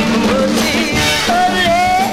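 1960s soul record playing: a singer over a full band, with a long held note in the second half.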